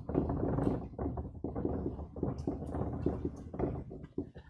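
Dry-erase marker writing on a whiteboard: a run of short, irregular scratching strokes with small squeaks as a couple of words are written.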